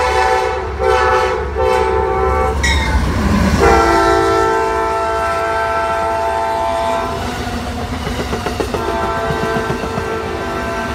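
Amtrak P40DC locomotive's air horn sounding three short blasts as it approaches, then a long blast at a lower pitch after the locomotive rushes past about three seconds in. The passenger cars then rumble and clatter by on the rails, and the horn sounds again near the end.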